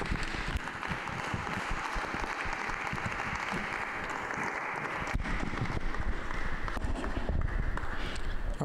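Congregation applauding, a steady, even clapping that thins a little near the end.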